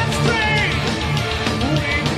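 Heavy metal band playing live: distorted electric guitars, bass and drums, with a singer's voice wavering over the top.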